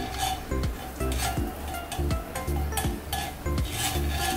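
A whisk stirring minced garlic around a frying pan, with irregular scraping and light clicks against the pan and some sizzling from the hot fat. Background music with a steady beat plays underneath.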